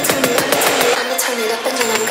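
Electronic dance track in a breakdown: a wavering synth melody carries on while the kick and bass cut out about halfway through, leaving the low end empty.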